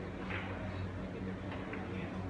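Steady low electrical hum of hall room tone, with a few faint ticks in the second half and no ball strike.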